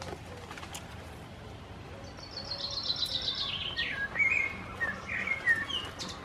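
A songbird singing: a fast run of repeated notes falling in pitch about two seconds in, then a few warbled notes near the end.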